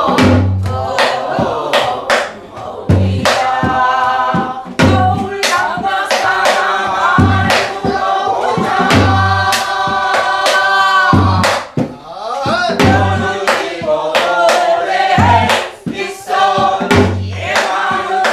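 A woman sings a Korean Namdo folk song in a strained, bending pansori-style voice, holding one long note near the middle, while others sing along. The buk barrel drum accompanies her with deep strokes on the drumhead and sharp clicks of the stick on the drum's wooden body.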